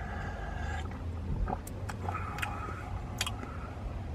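Sips and swallows of hot chocolate from a paper cup, with a few small sharp mouth clicks, over a steady low rumble in a van's cabin.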